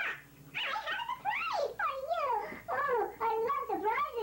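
Sped-up, high-pitched 'chipmunk' human voice making long gliding, squealing vocal sounds that rise and fall in pitch.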